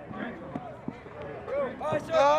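Scattered shouted voices of recruits and drill instructors, short overlapping calls rather than clear words, with a couple of light knocks.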